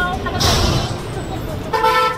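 Roadside traffic rumbling, with a short vehicle horn toot at the start and another near the end, and a brief hiss about half a second in.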